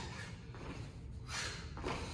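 Sneakers stepping and landing on a hard hall floor during side-to-side squats: a few soft thuds.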